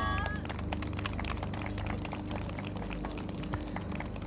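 A steady low hum with faint, scattered light clicks, after the tail of a voice fades in the first moment.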